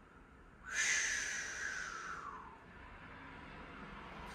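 A person breathing out audibly in one long exhale. It starts suddenly under a second in, then falls in pitch and fades over about a second and a half.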